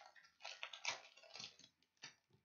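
Plastic wrapper of a baseball card pack crinkling as gloved hands tear it open and pull the cards out, in a string of short, irregular crackles.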